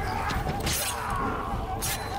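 Two crashes from a film fight scene: one about half a second in, lasting a moment, and a shorter one near the end.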